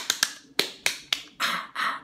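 A person's hands clapping, about six sharp, unevenly spaced claps over the first second and a half. A breathy hiss from the voice follows near the end.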